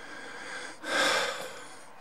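A person's breath, one noisy puff about a second in that fades away.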